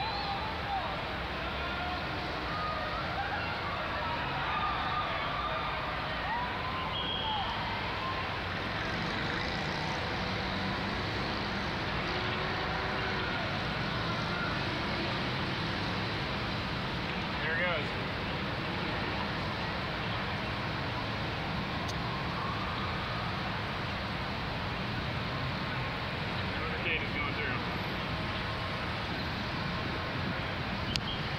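Steady city street noise of traffic, with indistinct voices from a crowd gathered at the intersection, heard mostly in the first half.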